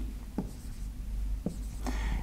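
Marker pen drawing on a whiteboard: faint strokes with two brief squeaks, one about half a second in and another about a second later.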